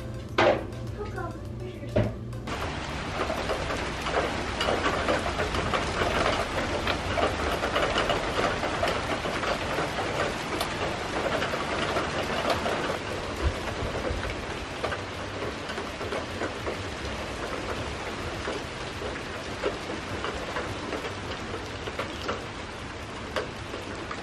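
Steady rain falling, beginning about two seconds in and heaviest in the first half, then easing slightly. A few sharp knocks and background music come just before the rain starts.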